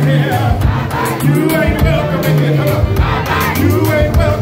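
Loud dance music with a steady beat and a heavy bass line, with a crowd of dancers singing and shouting along.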